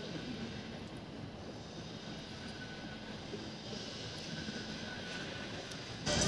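Steady, distant engine drone with outdoor background noise, and a faint hiss that grows through the second half.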